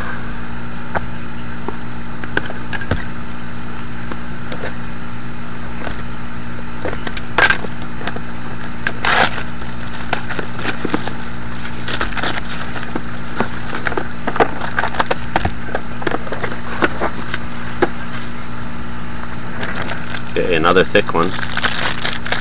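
Steady room hum with scattered short crackles and clicks from a foil trading-card pack being handled in the hands.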